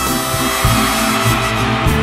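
A live band playing loudly, with a moving bass line and a horn section, a saxophone among them.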